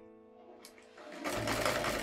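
Electric domestic sewing machine starting up a little over a second in and running steadily as it stitches a seam, over soft background music.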